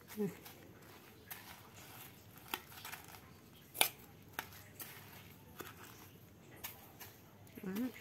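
Metal kitchen tongs clicking now and then against a stainless steel bowl as a roll is turned in panko breadcrumbs: a few short sharp clicks over faint crumb rustling.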